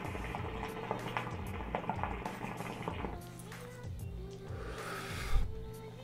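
Hookah water bubbling for about three seconds as smoke is drawn through the mouthpiece, over steady background music.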